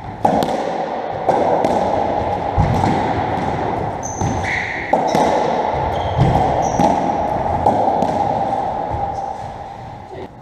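Racketball rally on a squash court: the rubber ball struck by rackets and smacking off the walls and wooden floor, about a dozen sharp hits, each ringing in the court's echo. A few short high squeaks sound around the middle, and the hits stop shortly before the end as the rally finishes.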